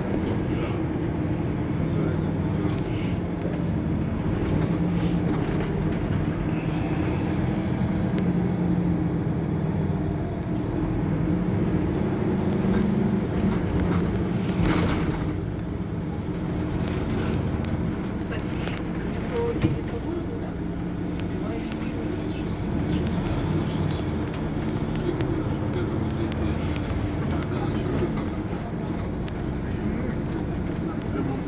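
Mercedes-Benz Citaro C2 hybrid city bus standing at a stop with its diesel engine idling, a steady low rumble. A brief hiss comes about halfway through and a sharp click about two-thirds in.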